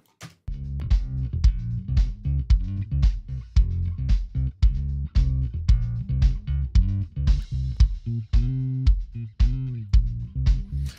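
Mix playback of a bass guitar line with a kick drum hitting about twice a second, starting about half a second in. The bass is ducked on each kick by a Trackspacer plugin sidechained from the kick, its ratio being turned down to ease the pumping.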